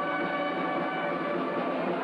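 Brass band holding long, steady chords.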